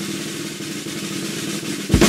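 Snare drum roll: a fast, even roll that ends in a sharp accented hit near the end.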